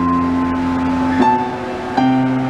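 Upright piano being played: a chord rings on from just before, then a new chord is struck about a second in and sustains.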